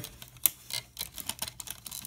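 Plastic LEGO parts clicking and clacking as a brick-built dinosaur's legs are moved on their ball and ratchet joints: an irregular run of small clicks, the sharpest about half a second in.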